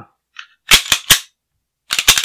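Beretta PX4 Storm pistol's slide being run onto its frame by hand: a faint click, then three sharp metal clacks in quick succession about a second in, with another rapid clatter of clicks starting right at the end.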